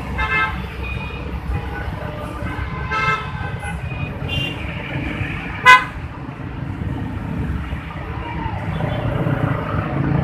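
Congested city traffic with a steady low engine rumble from idling and creeping vehicles, punctuated by several short horn toots. The loudest is one brief, sharp horn blast a little past halfway through.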